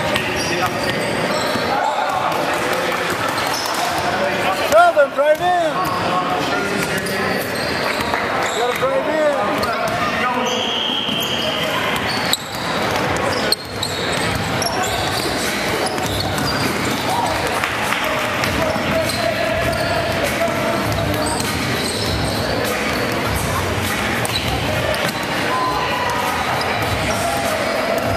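Basketball being bounced on a hardwood gym floor during a game, with the steady echoing chatter of players and spectators in a large hall. A brief louder pitched cry stands out about five seconds in.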